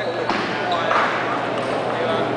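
Light clicks of a table tennis ball off paddles and table during a rally, over the steady babble of many voices in a large, echoing hall with several matches going on.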